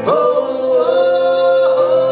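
Two male voices singing live together, sliding up into a long held note at the start and sustaining it.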